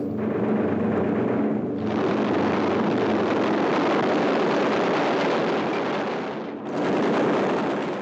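Dense aerial-combat noise of machine-gun fire over aircraft engines, growing fuller about two seconds in and briefly dipping near the end.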